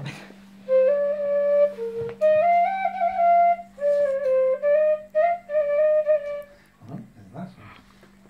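A frula, the Serbian wooden duct flute, playing a short, simple melody of held notes that move in small steps, with a couple of brief breaks. The melody stops about a second and a half before the end.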